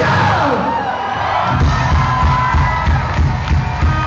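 Live punk rock band playing loud through a PA, with a crowd cheering. The drums and bass drop out for about a second, then come back in with a steady beat.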